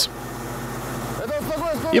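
Lada's engine and rear-axle drivetrain held steady in second gear, spinning a jacked-up studded tire at about 1,870 rpm, the wheel speed of a car doing 200 km/h: a steady hum.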